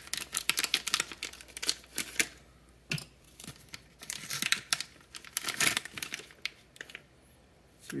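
Crinkling and rustling of plastic packaging with quick clicks, in bursts, as wire leads with small plug connectors are pulled out and sorted by hand. It falls quiet about six seconds in.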